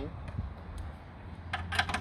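A ratchet wrench working on the strut-top nuts of a BMW E36: a couple of single clicks, then a quick run of sharp metallic clicks near the end.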